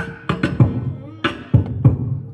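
Vocal percussion from a beatboxer, amplified through a handheld microphone and PA: sharp kick-drum and snare sounds made with the mouth. They come in groups of three hits about a third of a second apart, then a short pause, and the group plays twice.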